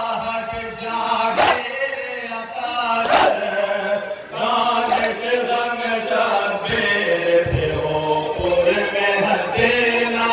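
Men chanting a Muharram nauha (lament) together, with sharp slaps of matam chest-beating landing in time about every second and three quarters.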